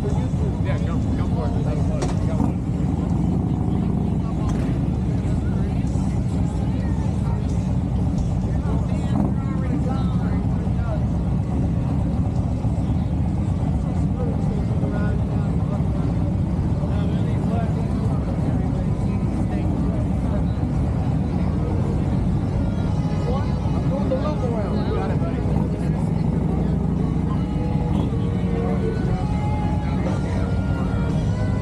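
Harley-Davidson motorcycle's V-twin engine running steadily at low speed, with crowd chatter and music in the background.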